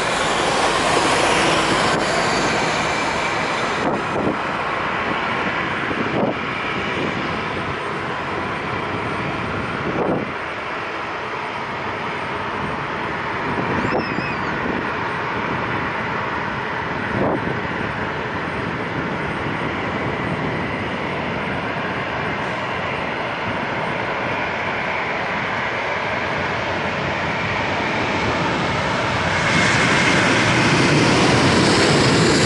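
Boeing 737-800's CFM56 jet engines, a steady wide noise that grows louder near the end as the airliner runs along the runway close by. A few brief knocks stand out above it.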